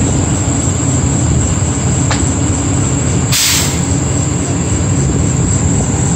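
RV power awning extending: a steady low mechanical rumble runs throughout, and a short sharp air hiss comes about three and a half seconds in.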